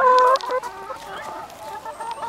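Brown hens clucking close up: one loud, held call right at the start, then a run of shorter, quieter clucks.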